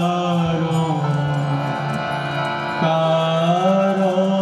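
Hindu devotional chanting sung over a steady harmonium drone, the voice wavering on held notes; the music moves to a new note about three seconds in.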